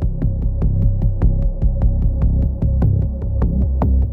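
Electronic title music: a pulsing, throbbing bass line under a fast, even ticking beat of about six ticks a second, with one high note held throughout.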